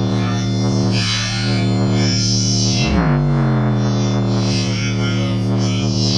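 Bass-heavy electronic music played loud through a small 3-inch Logitech woofer driven to large cone excursion: a sustained deep bass note with a brief bend in pitch about three seconds in.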